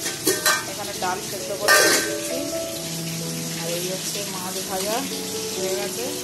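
Pieces of fish frying in hot oil in a steel pan: a loud burst of sizzling about two seconds in, then steady sizzling. A couple of sharp metal clicks of utensils near the start.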